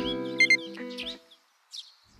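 Background music of acoustic-guitar-like chords with short bird chirps over it. The music stops about a second and a half in, and one more chirp follows after a brief silence.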